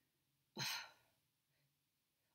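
A woman's brief, breathy, sighed "oh" about half a second in, followed by near silence.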